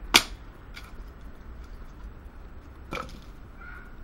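Sharp wooden strikes on a log chopping block as a branch is split with a knife: one loud crack just after the start, a lighter knock soon after, and another strike about three seconds in.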